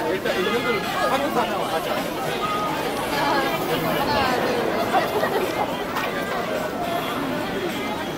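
Several people talking over one another: lively, overlapping chatter.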